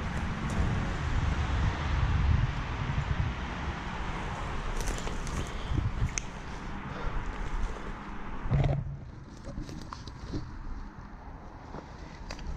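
Rustling and scuffing of clothing and dry undergrowth as someone moves about close to the microphone, heavier for the first eight seconds, with a thump near nine seconds, then quieter.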